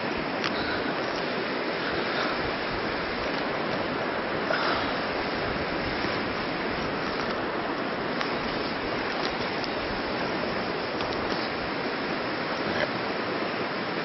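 Flowing river water rushing steadily.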